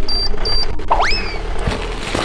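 Two short electronic timer beeps, then a cartoon whistle effect that sweeps quickly up in pitch about a second in. Underneath is a low rumble and crackling as a car tyre rolls onto a watermelon and bursts it.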